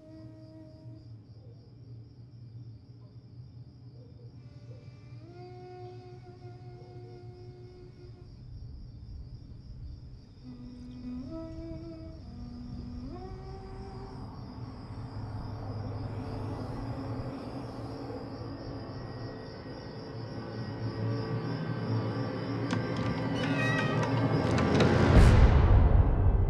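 Eerie horror film score: long held tones that slide up in pitch, over a low rumble that slowly swells louder, building to a loud climax with a fast falling sweep near the end.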